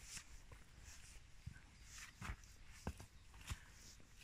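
Very quiet woodland with a handful of faint footsteps crunching on a leafy path, spaced about half a second to a second apart.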